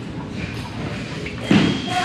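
A fencer's front foot slaps hard onto the wooden floor in a lunge, a single loud thump about one and a half seconds in. Right after it the electronic scoring box starts a steady high beep, signalling that a touch has registered.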